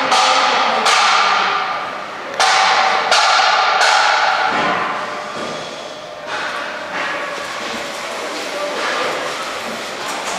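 Construction banging, about five sharp knocks in the first seven seconds with fainter ones after. Each knock rings on and fades slowly, echoing through a large, empty building shell.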